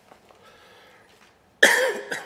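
A person coughing once, loud and sudden, near the end.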